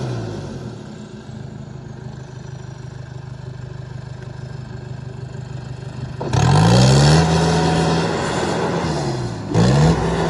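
Skagit BU199 tower yarder's diesel engine hauling the skyline carriage: it drops back to a low, steady drone, then revs up hard about six seconds in, eases off for a moment near the end and revs up again.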